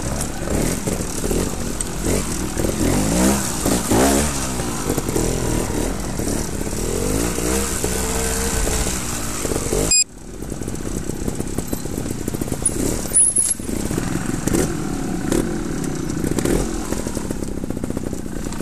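Trials motorcycle engine revving in repeated short rises and falls as it works over rough ground. The sound cuts off abruptly about halfway through, then a trials bike engine is heard again, blipping over rocks.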